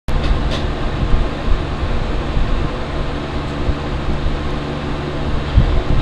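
Steady background hum and hiss, like a fan or air conditioner picked up by a webcam microphone, with uneven low rumbling and a couple of faint knocks.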